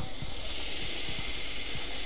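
Small electric motor of a home-built motor-generator rig running, a steady whirring hiss with an uneven low rumble underneath.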